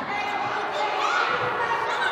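Crowd of children's and spectators' voices in a school gym, with a basketball bouncing on the hardwood court during play.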